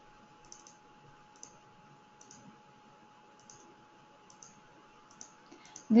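Faint computer mouse clicks, about ten of them at an irregular typing pace, as letters are picked one by one on an on-screen keyboard. A faint steady hum runs underneath.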